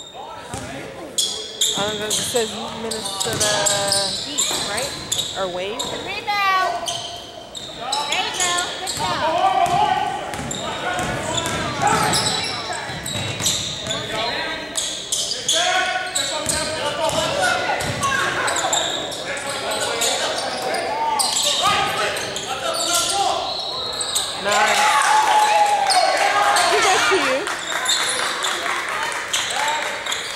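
Basketball game in an echoing gym: the ball bouncing on the hardwood floor, with indistinct voices of players and onlookers calling out, and a few short high squeaks.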